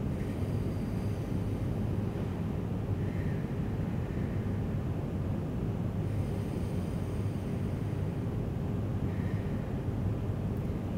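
Steady low room rumble, with two faint, slow breaths drawn in through pursed lips, as if through a straw: one about three seconds in and one near the end.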